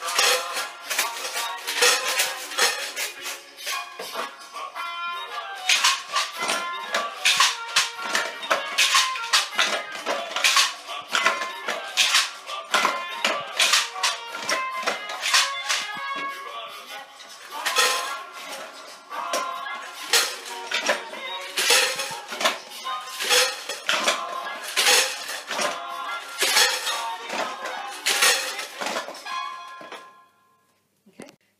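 Homemade shakers, a crisps tube, a plastic pot and a drinks bottle filled with rice, pasta, paper clips and pencils, rattled in rhythm along with recorded music.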